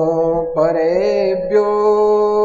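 A voice chanting in long, wavering sung notes over a steady held musical drone. The voice breaks off briefly at the start, comes back about half a second in, and stops about a second and a half in, leaving the drone.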